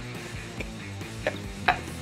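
Quiet background music, with a few faint short ticks of cereal pieces tumbling from a tipped-up cardboard cereal box into the mouth.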